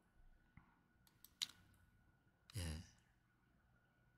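Near silence, broken by a few faint clicks a little over a second in and a short sigh from a man about two and a half seconds in.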